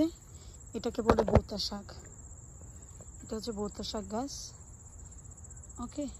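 Steady high-pitched insect trill, like crickets, under two brief stretches of a person's voice, with a couple of knocks about a second in.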